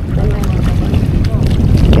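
Heavy wind noise on the microphone, with feet in sandals splashing and sloshing through shallow seawater.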